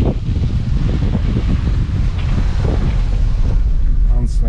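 A small car's engine and tyres give a steady low rumble, heard from inside the cabin, as it goes down a steep hill. Wind buffets the microphone throughout.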